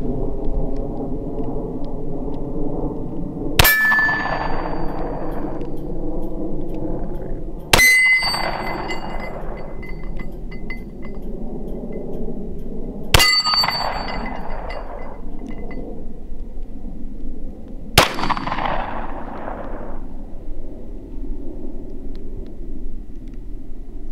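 Four pistol shots from a Smith & Wesson M&P, spaced four to five seconds apart, each echoing away, most followed by the ringing clang of a steel target plate being hit. A steady low hum runs underneath.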